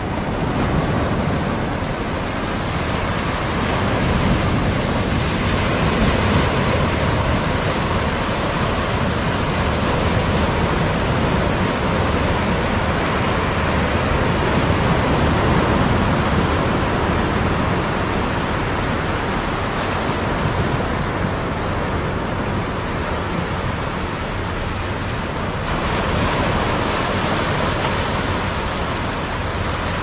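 Sea surf breaking and washing up a sandy beach in the rough monsoon season: a steady rush that swells and eases slowly.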